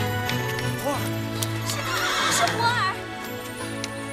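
A horse whinnies over steady background music, with a long, wavering neigh peaking about two to three seconds in.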